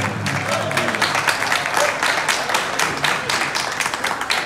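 A crowd of guests applauding, many hands clapping, as the music stops at the start.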